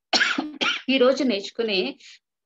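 A woman speaking Telugu, heard through a video-call connection.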